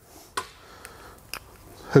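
Quiet room tone broken by two brief clicks, one early and one past the middle, as test leads and a sensor cable are handled; a spoken word starts at the very end.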